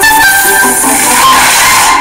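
Background music, an instrumental track with held notes.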